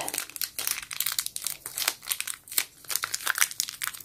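Thin clear plastic packaging bag crinkling and crackling in the fingers as it is worked open, a quick irregular run of small crackles.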